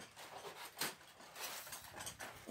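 Faint handling sounds of a tightly rolled thin titanium stove-pipe sheet being worked by a gloved hand, as a retaining ring is slid down the roll, with one short click a little under a second in.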